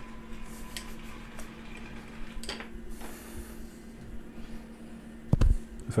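Low steady hum in a workshop, with a few faint clicks of tools being handled and one heavier thump about five and a half seconds in.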